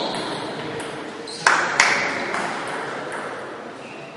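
Two sharp taps of a celluloid table tennis ball bouncing, about a third of a second apart, each with a short ringing tail, over faint background voices.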